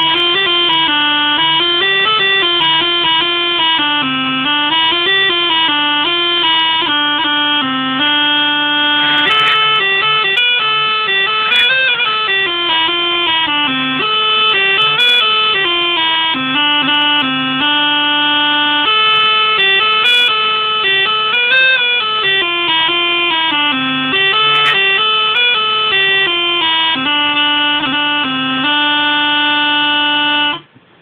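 A Hümmelchen, a small German bagpipe whose reeds are made of cling film, plays a melody in C over a steady drone. A few brief crackles cut through the tone; the uploader traces this crackling to condensation on the film reeds.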